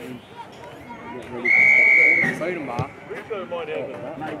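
A referee's whistle: one steady blast of just under a second, about a second and a half in, signalling the kick-off, over spectators' chatter.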